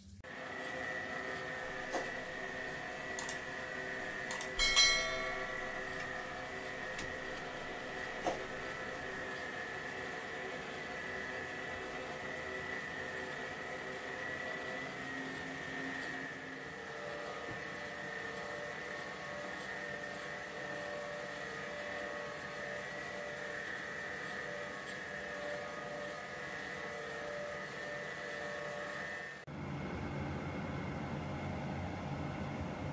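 Metal lathe running with a steady whine while turning down the shoulder of a silver steel axle, with a few clicks and one sharp metallic ring about five seconds in.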